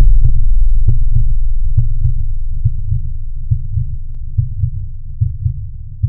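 A deep, throbbing low bass pulse from the soundtrack, fading out steadily, with a few faint clicks.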